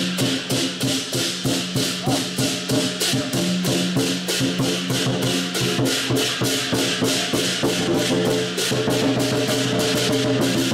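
Chinese lion dance percussion: a drum beaten with clashing cymbals in a fast, even beat of about four to five strikes a second, over a steady low ringing tone.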